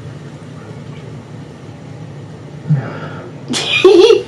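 A person sneezes once, sharply, near the end, after a short breath-like sound just before it. Until then only a low, quiet background is heard.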